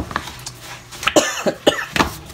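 A woman coughing several short times, with papers shifted about on a table.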